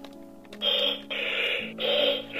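Buzz Lightyear Signature Collection figure's built-in speaker giving four short bursts of crackly radio-style static, starting about half a second in. This is its microphone/communicator feature switching on.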